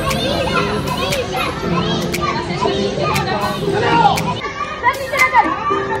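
Many children's voices calling and shouting over one another in a hall, with a few sharp thuds and soft background music.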